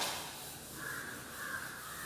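A cloth duster wiping chalk off a blackboard, a sudden rubbing stroke at the start. About a second in, an animal call comes in the background, in a few broken segments.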